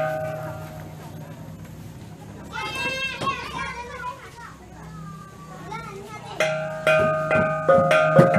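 Percussion music of ringing, pitched metal strikes and drumbeats starts about six seconds in and gets louder, in a steady beat. Before it, a single ringing strike at the start and children's voices.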